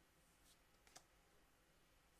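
Near silence, with two faint clicks of trading cards being slid through in the hand, about half a second and a second in.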